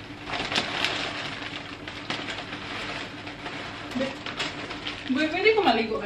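Dry medium-grain rice pouring from a plastic bag into a plastic storage bin: a steady rattling hiss of falling grains. A person's voice is heard briefly near the end.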